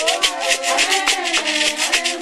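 Traditional music: rattles shaken in a fast, steady rhythm, with voices singing over them.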